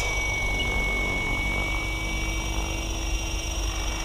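Align T-Rex 760X electric RC helicopter lifting off into a hover: a steady high-pitched motor and drivetrain whine over the rotor noise, with wind rumbling on the microphone.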